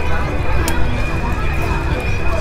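Outdoor street background: a steady low rumble with a thin, steady high-pitched tone and indistinct voices, and one sharp click less than a second in.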